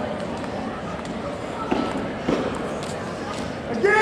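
Wrestling-room ambience with faint indistinct voices and two dull thumps from the wrestlers' feet and bodies on the mat, about a second and a half in and again half a second later, then a loud shout near the end.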